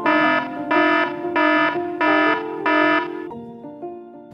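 Five loud electronic alarm beeps, evenly spaced about one and a half a second, over background music: an emergency-alert sound effect.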